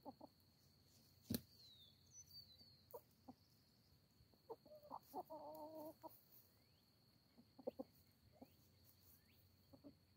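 Quiet domestic hens clucking softly and sparsely while foraging, with one drawn-out call about five seconds in. A single sharp click sounds a little after one second, over a thin steady high tone.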